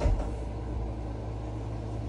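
A short thump right at the start, then a steady low hum.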